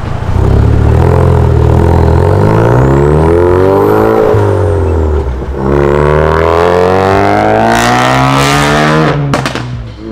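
Ford Focus RS's turbocharged 2.3-litre four-cylinder accelerating hard and loud, its revs climbing, dipping at a gear change about four seconds in, then climbing again before the sound drops away sharply near the end.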